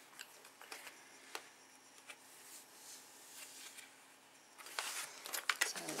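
Handling noise from a disc-bound paper planner: a few light clicks and soft rustles as it is moved on the table, then louder rustling near the end as it is picked up.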